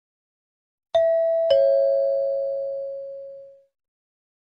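Two-note descending chime (ding-dong), a higher note then a lower one half a second later, ringing and fading away over about two seconds: the signal marking the move to the next section of the listening test.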